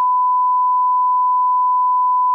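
Test tone that goes with colour bars: a single pure beep held at one steady pitch and level throughout.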